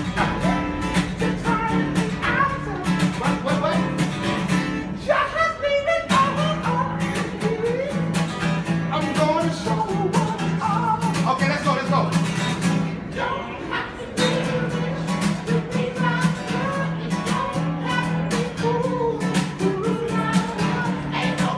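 Guitar strummed in a steady rhythm of chords, with brief breaks about a quarter of the way in and again about two-thirds through.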